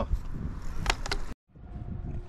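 Wind rumbling on the microphone outdoors, with one sharp click a little before halfway. The sound drops out completely for a moment about two-thirds in, at a cut in the footage.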